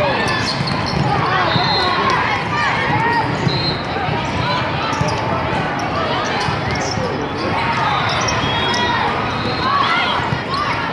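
A volleyball rally on an indoor sport court in a large hall. The ball is struck by the players' arms and hands in scattered knocks, shoes squeak briefly on the court, and many voices call out and chatter in the background.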